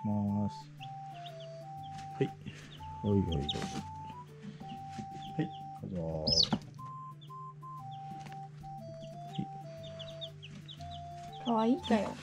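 Newly hatched chicks peeping: many short, high, falling cheeps repeating, with a few louder calls, over background music with a simple melody.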